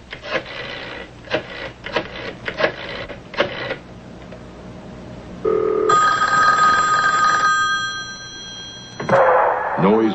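A telephone ringing for about three seconds, starting about five and a half seconds in, after a run of irregular clicks. Near the end a sudden burst of loud noise follows, like line static.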